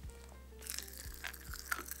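Popping candy crackling in the mouth: a scatter of small sharp pops that begins about half a second in.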